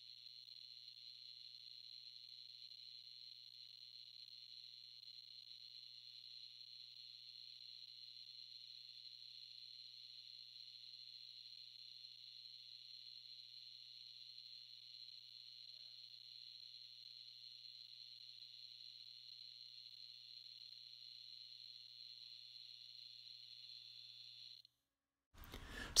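Homemade 40 kV AC flyback driver running with a faint, steady high-pitched whine over a low hum. The sound cuts off about a second and a half before the end.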